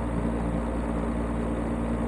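Steady low machine hum with an even hiss.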